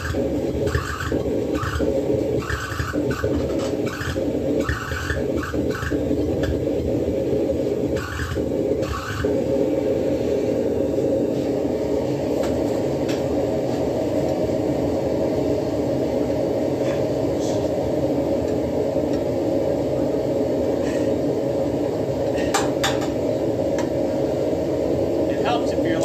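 Steady low machine roar filling the shop, with a few sharp metallic clinks near the end as a hot coil spring is slid onto a steel rod clamped in a vise.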